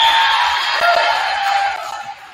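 Crowd and players cheering, whooping and yelling after a point is won in a volleyball match in a gym, many voices at once; the cheer fades over the last half second.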